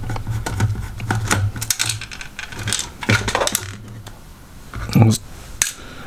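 Small precision screwdriver turning a screw out of a hard plastic toy case, with irregular light clicks and taps from the bit, the screw and the plastic shell being handled. A low steady hum runs underneath.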